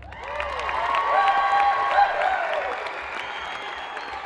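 Theatre audience applauding and cheering at the end of a dance performance. The clapping and shouts swell about a second in, then ease off a little toward the end.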